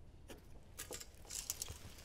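Faint pencil strokes marking a wooden framing plate, with a few small clicks from a tape measure being handled.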